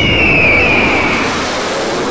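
Loud rushing noise with a high whine that falls slowly in pitch over the first second or so. It is a sound effect in an edited soundtrack.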